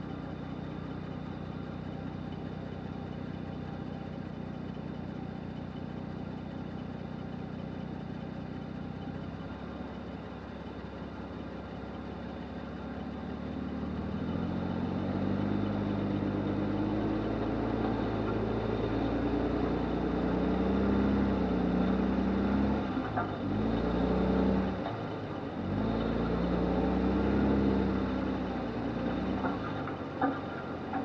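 1997 Lexus LX450's 4.5-litre inline-six idling steadily, then pulling away at a crawl over a rutted dirt trail. From about halfway through, the engine gets louder and its note rises and falls as it works over the ruts.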